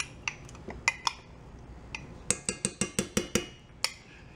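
A plastic measuring cup knocked against the rim of a stainless steel mixing bowl to shake out sour cream: scattered clinks, then a quick run of about eight taps in the second half and one more knock near the end.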